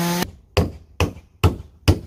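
A petrol chainsaw running at full throttle through wood cuts off abruptly about a quarter second in. Then four sharp hammer blows on wood follow at an even pace of about two a second.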